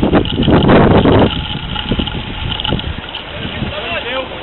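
Wind buffeting the microphone in a loud rush for about the first second, then easing, with players' voices calling across the pitch.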